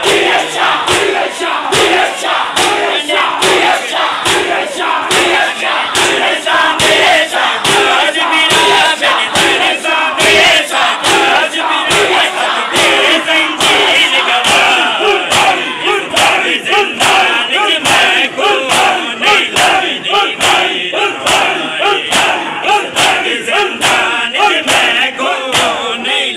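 A crowd of men performing matam, striking their bare chests with open hands in a steady rhythm of sharp slaps, while many male voices shout together.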